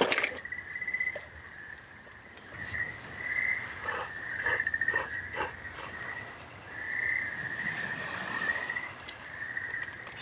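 A person slurping instant noodles from a cup with chopsticks, in a handful of short bursts in the middle, over a steady, wavering high-pitched chirring of calling night creatures.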